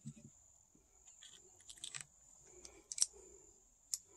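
A few faint small clicks of metal ring-terminal connectors and terminal hardware being handled and fitted onto a sealed lead-acid battery's terminal, the loudest about three seconds in, over a faint steady high tone.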